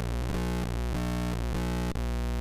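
Earth Return Distortion Eurorack module with nothing patched in, putting out a steady buzzing noise with a dense stack of overtones: stray electromagnetic interference picked up by the dirt inside the module. A brief click sounds near the end.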